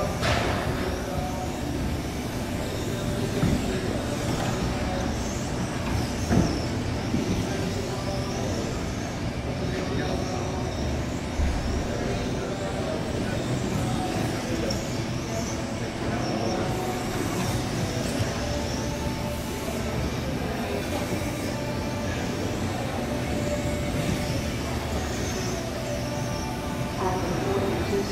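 High-pitched whine of 1/12-scale 13.5-turn brushless electric RC pan cars, rising and falling as they accelerate and brake around the track, under indistinct voices and background music.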